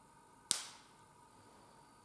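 A single sharp snap about half a second in, dying away quickly with a short ring of the room: the large priest's communion wafer being broken in two at the fraction.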